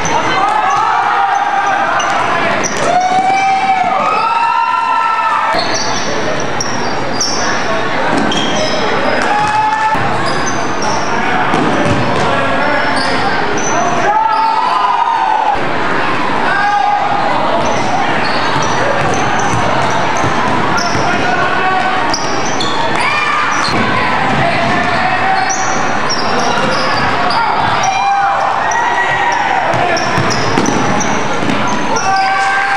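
Basketball game on a hardwood gym floor: the ball bouncing and short high-pitched sneaker squeaks, over steady crowd chatter and shouts that echo in the large gym.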